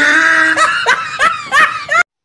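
A person laughing loudly: one drawn-out high note, then a run of short high-pitched laughs about three a second.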